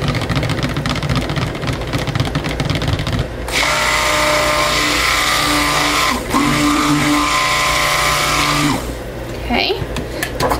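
Stick blender motor running steadily in a pitcher of soap batter, blending the lye solution into the oils, with a brief stop and restart about six seconds in. It is preceded by a few seconds of rapid clattering as the blender head is worked through the batter.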